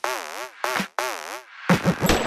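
Comic cartoon sound effect: a run of about four short warbling tones whose pitch wobbles rapidly up and down, ending in a couple of louder, lower quick blips.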